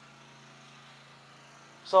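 Quiet room tone with a faint steady low hum; a man starts speaking near the end.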